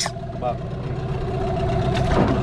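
Outboard motor idling steadily. A single short word comes about half a second in.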